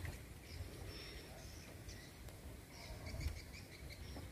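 Faint outdoor ambience with scattered short bird chirps over a low, steady rumble.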